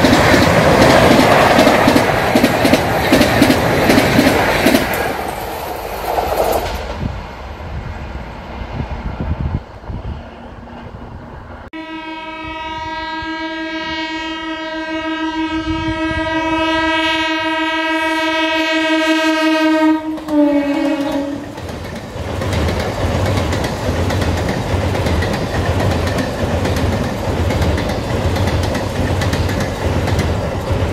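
An express train's coaches rush past on a steel truss rail bridge, the noise dying away after about six seconds. About twelve seconds in, an electric local train sounds one long steady horn for about eight seconds, ending in a short lower note. Then its wheels rumble and clatter across the steel bridge.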